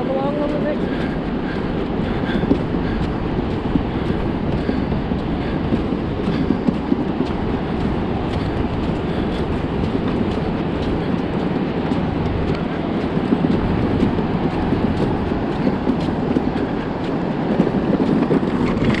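Wagon loaded with seashells being pulled over sand: a steady rattling clatter of shells jingling against one another in the wagon.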